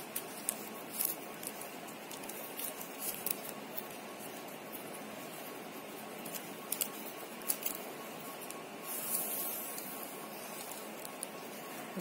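Plastic craft-wire strands being threaded and pulled through a woven toy by hand: scattered small clicks and rustles over a steady hiss, with a longer swish about nine seconds in.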